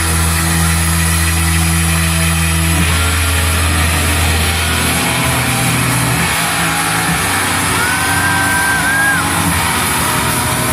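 A rock band's final chord on electric guitar and bass, held and ringing through the PA in a large hall. The chord drops away by about five seconds in, leaving a steady wash of hall noise, with a brief high whistle near the end.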